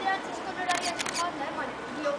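A quick run of four or five sharp clicks, close together, about a second in, over the voices of children talking.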